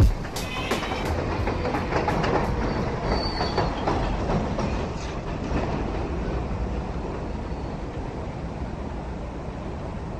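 New York City elevated subway train running on the tracks: a steady rumble and rattle with a few wheel clacks in the first seconds and a brief high wheel squeal near the middle, growing slowly fainter.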